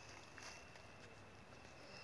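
Near silence: faint background hiss with a thin, steady high tone.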